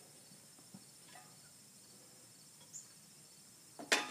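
Quiet outdoor ambience with a steady, faint, high insect chirring and a few small ticks, then one sharp clack just before the end as hands reach into the riding mower's engine.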